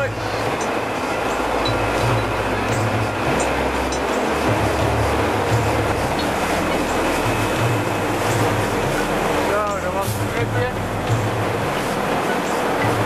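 Dive boat's engine running steadily while under way, with wind and rushing water from the wake.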